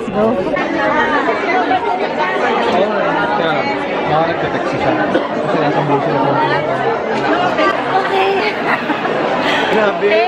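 Crowd chatter: many voices talking over one another, continuous throughout, with no single voice standing out.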